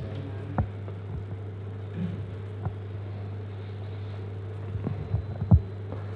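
Steady low electrical hum from the church's sound system, with a few soft knocks scattered through it, the loudest about five and a half seconds in.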